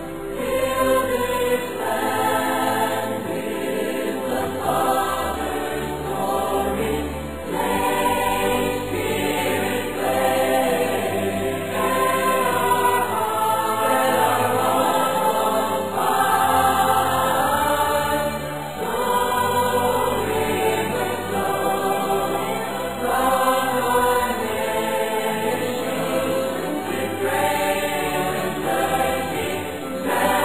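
Choral music: a choir singing long, held notes that change every second or two.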